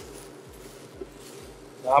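Quiet, even background noise as buckwheat, carrots and kale are stirred in a stainless pan with a silicone spatula, with one small tick about a second in; a man's voice begins near the end.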